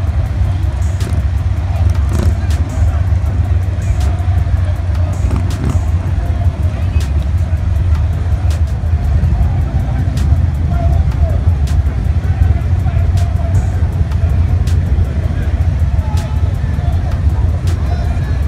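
Steady low rumble of race cars idling at a drag strip's starting line, with no revving or launch, under music and voices.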